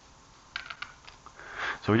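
Light clicks of 3D-printed plastic parts knocking together as they are handled, a quick cluster about half a second in and a few fainter ones after.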